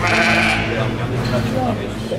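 Rough Fell ewes bleating, with people talking around them.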